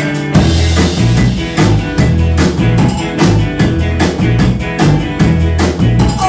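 Live rock band playing an instrumental passage on drum kit, electric guitar, electric bass and keyboard; the full band with a steady drum beat and heavy bass comes in about a third of a second in over a keyboard figure.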